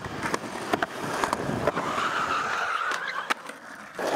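Skateboard wheels rolling on a concrete path, clicking over the pavement joints, then a skidding slide that lasts about a second and a half and ends with a knock.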